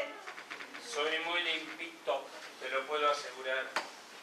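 Voices on stage speaking in short phrases that are quieter and less clear than the main dialogue, with a single sharp click near the end.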